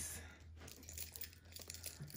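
Faint handling noise of keys being clipped onto a small metal key ring: light scattered clicks and rustles.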